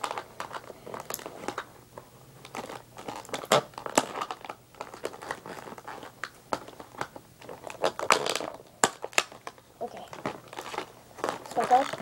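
Plastic and cardboard toy packaging crinkling and clicking irregularly as it is handled and its paper-covered twist ties are cut.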